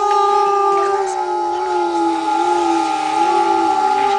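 Several voices hold a long, wordless note in a steady drone. About halfway through, one voice wavers and slides lower in pitch while another holds steady.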